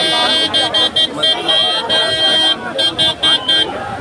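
A vehicle horn honking over crowd chatter: a few short toots, one long blast, then about five quick toots that stop shortly before the end.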